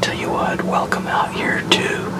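A man speaking in a low, hushed voice close to the microphone, over a faint steady hum.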